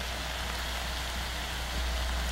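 Eggplant and green beans sautéing in a hot wok, giving a steady, even sizzle.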